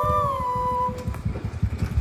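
Background flute music fading out in the first second, then a motor scooter's small engine puttering at low speed as it rides up.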